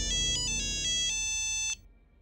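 Mobile phone ringtone: a bright electronic melody of quick stepped notes that cuts off suddenly shortly before the end.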